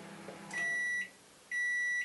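A microwave oven's hum stops as its timer runs out, then its beeper gives two high-pitched beeps, each about half a second long and a second apart: the end-of-cycle signal that the program has finished.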